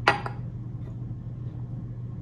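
A single sharp clink from a glass beaker, ringing briefly, then a low steady hum.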